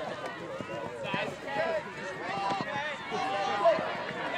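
Several ultimate frisbee players shouting and calling to one another during a point, with voices overlapping and no clear words.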